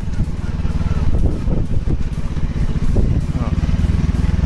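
A motorcycle engine running steadily under a heavy low rumble, with faint voices now and then.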